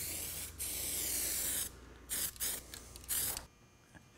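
Aerosol can of Medallion Rubber Seal RS-512 weld-through primer spraying in bursts: a short hiss, a longer one of about a second, then three brief puffs. It is laying a light coat of primer onto bare steel panel.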